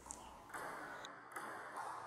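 A few faint light clicks of a table tennis ball striking the bat and table during a backhand push, over a faint steady hiss of room noise.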